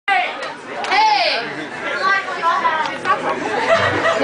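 Crowd chatter with several voices talking over each other in a club, and a high-pitched voice calling out about a second in.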